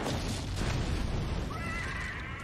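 A woman's long anguished scream from the show's soundtrack over a deep rumble, turning into a higher, wavering cry in the second half.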